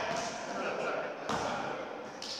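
Indistinct voices of players talking in a gym, with one thud a little over a second in.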